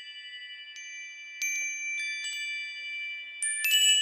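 Chimes ringing: scattered high metallic strikes that each ring on, growing louder about a second and a half in and again near the end with a quick cluster of strikes.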